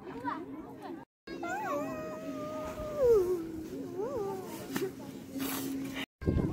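High-pitched, drawn-out vocal calls: a note held for over a second that then slides down in pitch about three seconds in, followed by shorter rising and falling calls, over a steady low hum.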